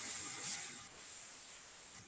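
Faint microphone hiss and room tone with a thin, steady high-pitched whine, the tail of speech fading out in the first half-second.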